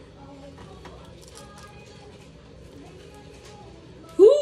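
Faint speech and music in the background over a low steady hum.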